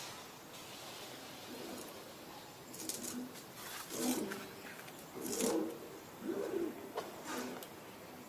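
A dove cooing in the forest: a series of low coos in the second half, about a second apart.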